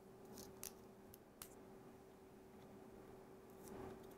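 Near silence with a few faint, short clicks of metal pushpins being pressed into a foam egg with a magnet-tipped pencil tool, over a steady faint hum.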